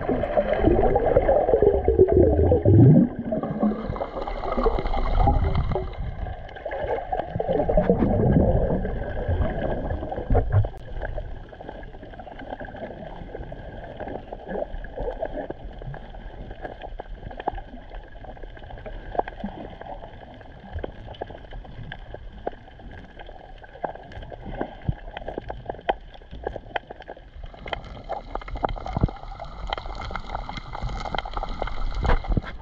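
Underwater sound picked up by a submerged camera: gurgling water and bubble noise for the first ten seconds or so, then a quieter steady underwater hiss with many scattered faint clicks.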